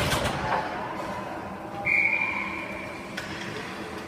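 Ice hockey referee's whistle: one steady, high, sharp blast lasting a little over a second, about two seconds in, the signal to stop play.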